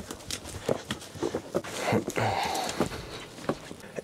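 Footsteps scuffing and clicking on rocky ground, with a dog sniffing close by.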